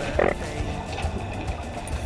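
Humpback whale vocalizations recorded underwater: a short grunt just after the start, then low moans that bend up and down in pitch, over a steady underwater rumble.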